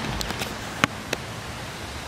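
Wood-chip mulch crackling under sandals, four or five sharp little crackles over a steady hiss.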